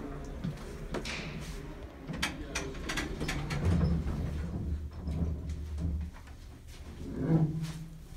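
A 1970s US Elevator hydraulic elevator's controls clicking several times after the doors shut, then a low steady hum of its machinery for about two and a half seconds. A short louder burst comes near the end.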